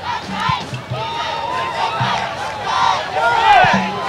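Crowd and sideline voices yelling and shouting together during a football kick return, growing louder towards the end.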